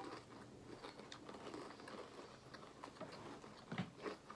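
Faint chewing of strawberry-jam-filled cookies, with small crunches and crackles scattered through.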